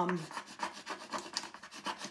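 A small transfer tool rubbing quickly back and forth over a decor transfer on a painted wooden board, in short repeated scraping strokes: the transfer is being burnished down so it adheres.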